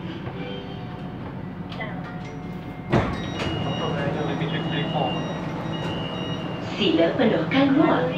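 Siemens Inspiro metro train at the platform: a thump about three seconds in, then a steady low hum and a repeated high beeping door chime. A recorded onboard announcement starts near the end.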